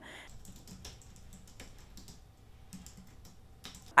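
Quiet room tone with faint, irregular light clicks scattered through it.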